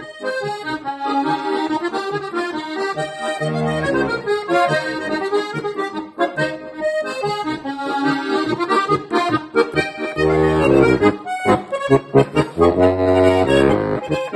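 Puschtra Steirische Harmonika, a diatonic button accordion with an old-wood (Altholz) body, playing a folk tune: a right-hand melody with deep left-hand bass notes coming in about four seconds in, and again in the last few seconds, where the playing is fullest and loudest.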